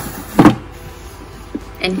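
Clear acrylic storage drawer pushed shut, a single short knock about half a second in.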